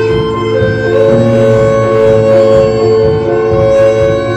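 Recorded piece of music played back over loudspeakers: a short phrase repeated and built up in dense layers of held tones, with a new higher note coming in about half a second in and a lower one about a second in. Unsteady low pulsing runs underneath.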